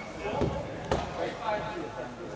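Players' voices calling across a large indoor football hall, with one sharp thud of a football being struck about a second in.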